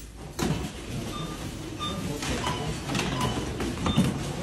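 Supermarket checkout barcode scanner giving about five short beeps as a cashier passes items over it in quick succession, with the clatter and rustle of goods being handled.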